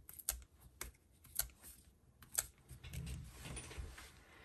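Paper and cardstock being handled and pressed down on a craft table: a few separate light clicks and taps, then a soft rustling in the last second or so.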